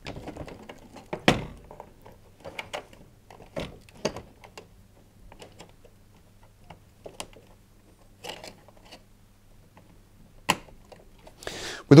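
Plastic wiring-harness connectors being handled and pushed onto a tumble dryer's circuit board: scattered light clicks and rattles, with two louder knocks, about a second in and near the end.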